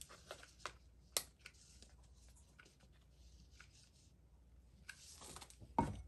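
Faint handling sounds of hot-glue crafting: scattered small clicks and taps as a glue gun is worked along a wooden flag stick, with a short dull knock just before the end.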